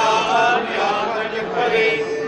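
Hindu temple priest chanting Sanskrit mantras in a sing-song recitation, the voice holding long, even notes.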